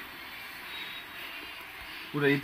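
Steady background noise with no distinct events: room tone.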